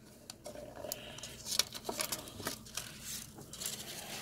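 Soft rustling of parchment paper with scattered light clicks and taps as the paper is handled and folded over a bag of cannabis flower on the rosin press plate.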